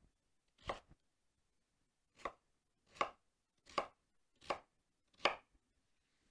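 Kitchen knife cutting through raw rutabaga and striking a wooden cutting board, six separate cuts. After the first, there is a pause, then five cuts come about one every three-quarters of a second.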